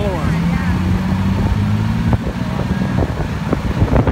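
Low rumble of a slow-moving vehicle heard from its open top deck, with wind buffeting the microphone and a steady low hum through the first two seconds or so.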